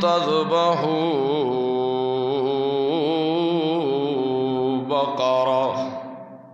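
A male Qari reciting the Quran in the melodic tajweed style into a microphone: one long ornamented phrase of held, wavering notes, with a brief break just before the end, then the voice stops and its echo fades.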